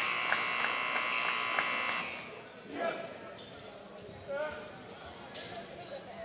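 Gymnasium scoreboard buzzer sounding a steady electronic tone for about two seconds in the break between quarters, with a basketball bouncing on the hardwood floor in the echoing gym. After the buzzer stops, there are scattered ball bounces and distant crowd voices.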